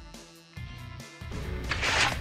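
Dramatic soundtrack music, then a low rumble that builds from about a second in, topped by a loud, noisy sound-effect burst near the end.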